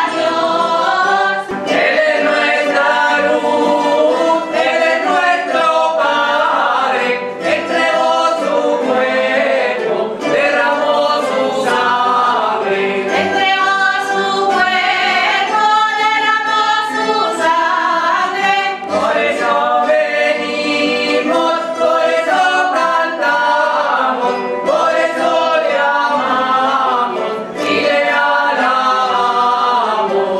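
A choir singing a hymn, with several voices together, accompanied by Spanish guitars and other plucked-string instruments.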